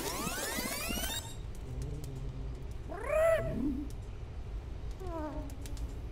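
Fast-forwarded cartoon soundtrack, its sped-up audio climbing in pitch for about the first second. Then a cartoon porg's squeaky cry rising and falling about three seconds in, and a falling cry near the end.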